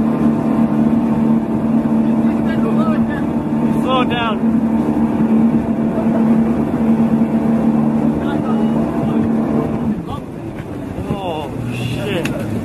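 Speedboat engine running steadily at speed, a loud even drone over wind and water noise, which eases off about ten seconds in. Voices shout briefly in the middle and again near the end.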